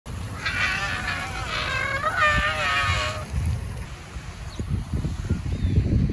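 A woman's high, quavering, drawn-out cry in two long parts over the first three seconds.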